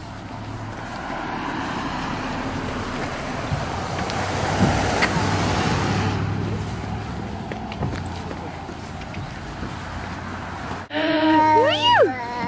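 Outdoor road traffic: a vehicle passing, its noise swelling to its loudest about five seconds in and then fading, over a low steady hum. Near the end a voice rises and falls briefly.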